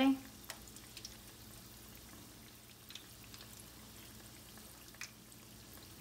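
Chicken keema pakoras frying in a pan of oil on medium heat: a faint, steady sizzle with a few light clicks.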